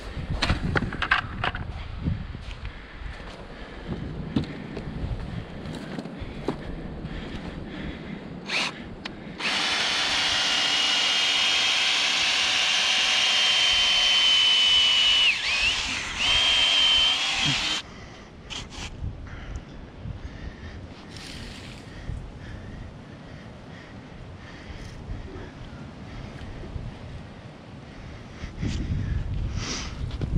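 Cordless drill running steadily for about eight seconds, starting about a third of the way in, as it bores a hole into the soil; its whining motor dips briefly near the end under load. Before and after it come scattered scrapes and knocks of hand-digging in dirt.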